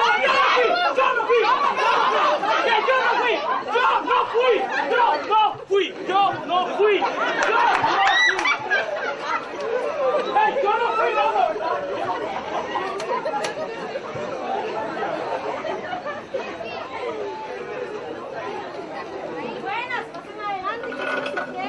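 Many voices talking and calling out over one another at once, a crowd's excited chatter, loudest in the first half and slowly dying down.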